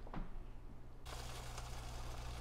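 Olive-oiled stuffed peppers sizzling on a sheet pan in a hot oven: a faint, steady crackly hiss over a low hum that starts suddenly about a second in, after a nearly quiet first second with one faint click.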